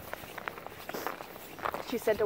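Footsteps of people in boots walking on a thin layer of snow: soft, irregular steps.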